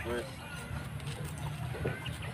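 A brief vocal sound from a person just as it starts, over a steady low rumble of outdoor background noise.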